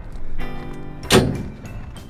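Rear engine-compartment door of a skid steer being swung shut, closing with one metal slam about a second in.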